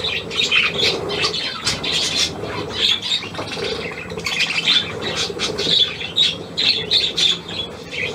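A flock of budgerigars chattering and squawking continuously in dense, overlapping high chirps.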